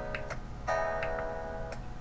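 Solo instrument playing a song's intro: separate notes struck one after another, several of them held and ringing on.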